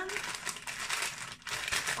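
Thin clear plastic snack bags crinkling as they are handled and lifted, a continuous run of small crackles.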